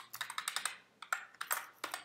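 Computer keyboard keys being typed: quick, irregular clicks of keystrokes while editing code.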